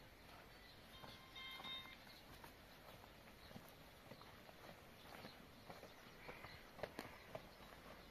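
Faint footsteps and rustling of plants as a person walks across grass carrying a bunch of freshly picked greens, with a few sharper light clicks about seven seconds in. A brief faint tone sounds about a second and a half in.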